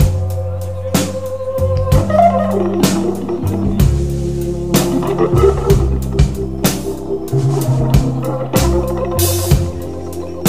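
Hammond B3 organ playing blues with a drum kit: long held organ notes and chords over a stepping low line, with regular sharp drum hits.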